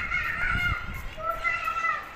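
A child's high-pitched voice calling out in drawn-out, sing-song tones, the last one held for about half a second near the end.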